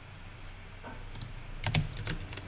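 Typing on a computer keyboard: a few quick keystrokes in the second half, after a quiet first second.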